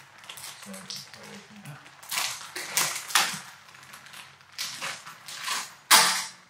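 Plastic packaging crinkling and rustling as an electric coolant pump and its bracket are unwrapped by hand, with a sharp snap near the end.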